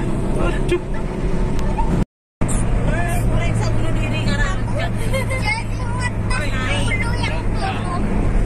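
Steady engine and road noise inside a moving car's cabin, with indistinct voices over it. The sound drops out completely for a split second about two seconds in.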